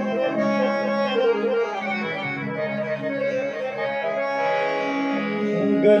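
Harmonium, with keyboard, playing a slow melodic instrumental introduction of held, reedy notes. A voice starts singing right at the end.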